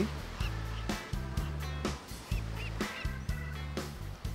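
Background score music: a steady bass line of held low notes with a light percussive beat.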